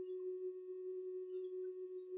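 Steady tape-recorder hum on an old lecture tape: one faint, unchanging tone with fainter higher tones above it.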